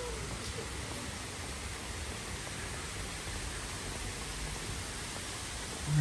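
Steady outdoor background noise in a city park: an even hiss with a low rumble and no distinct sounds standing out.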